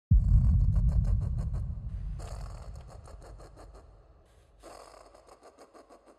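A sound effect: a sudden deep rumble that fades away over about four seconds, with a fast crackle running over it and two more bursts of crackle about two seconds and four and a half seconds in.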